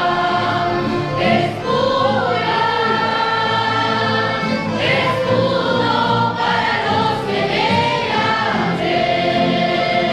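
Church choir of mostly women singing a hymn together in long held notes.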